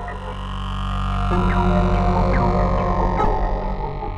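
Experimental electronic drone music: a dense, buzzing low synthesizer drone made of many steady tones, with short falling chirps above it. A new layer of tones comes in about a second in.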